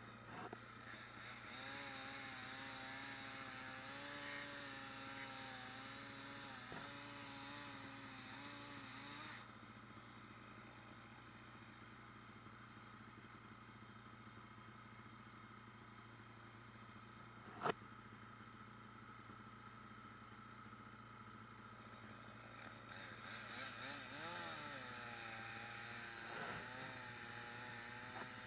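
Chainsaw running faintly at a distance with a wavering note for about the first nine seconds, then stopping; it comes back briefly with a rising and falling note near the end. A steady low hum runs underneath throughout, and there is one sharp click a little past the middle.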